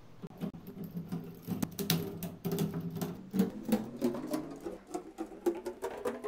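LEGO Technic plastic parts clicking and rattling as a long beam assembly is handled and set onto the frame, in many small irregular clicks.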